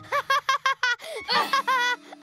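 A cartoon character giggling while being tickled: a quick run of short, high-pitched laughs, about seven a second, pausing briefly near the middle, then going on.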